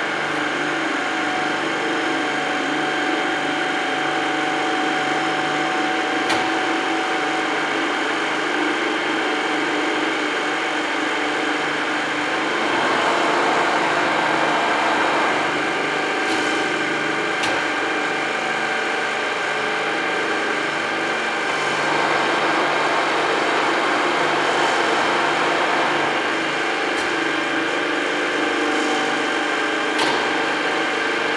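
A 1992 TOS FNGJ 32 tool milling machine running with nothing being cut: a steady machine whine, louder for a few seconds about a third of the way in and again past the middle, with a few sharp clicks.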